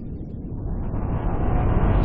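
Cinematic whoosh-riser sound effect for an animated logo: a noisy, rumbling swell that grows steadily louder and brighter toward the end.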